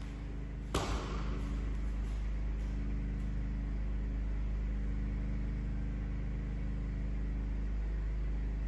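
A single sharp snap from a fast taekwondo form movement, about a second in, ringing briefly in the hall, over a steady low hum.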